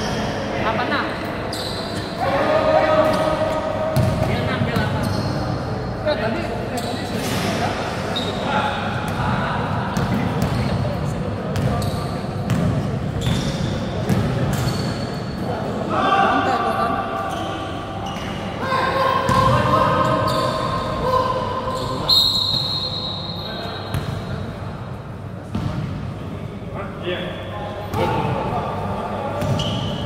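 A basketball bouncing on a hard indoor court, mixed with players' voices calling out, echoing in a large gym hall.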